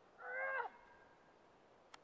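A short, whiny vocal sound from a person, about half a second long, rising then falling in pitch. A sharp click follows near the end.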